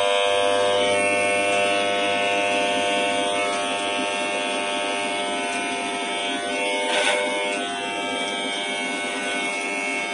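A VK Professional mains-powered electric hair trimmer running with a steady buzz, with a brief rasp about seven seconds in.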